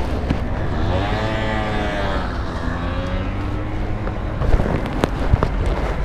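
KTM Duke 125's single-cylinder engine through an Akrapovic exhaust, revving up and back down as the bike rides off, over a steady low wind rumble on the microphone. A couple of sharp pops come about five seconds in.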